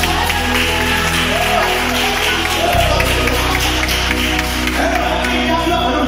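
Live church worship music: sustained low bass notes that change about three seconds in, with voices singing a melody over them.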